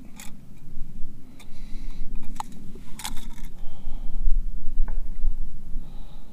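Small clicks and light scrapes as an expanded jacketed hollow-point bullet is picked up and turned in the fingers on a gelatin block, with a low rumble of handling noise about two thirds of the way through.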